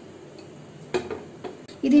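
Sharp clinks of a ceramic bowl set down on a metal pan, two in quick succession about a second in, then a lighter tap.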